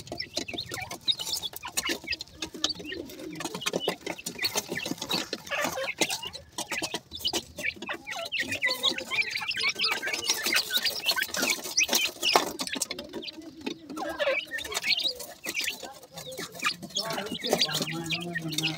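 A group of young grey francolins cheeping and chirping over one another, with quick clicks of pecking and scratching at sand and grain.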